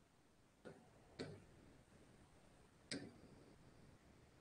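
Near silence broken by three faint, short clicks: one just under a second in, one a little after a second, and one about three seconds in.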